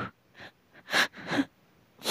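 A storyteller's short breathy gasps and exhalations, three in quick succession, the first faint and the next two louder.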